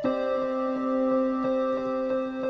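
Electronic keyboard on a square-lead synth patch playing a sustained left-hand chord while the right hand repeats melody notes over it.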